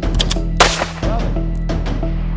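A single sharp pistol shot a little over half a second in, the loudest sound, with a short ring after it and a few fainter sharp cracks around it. Background music with a steady low drone runs underneath.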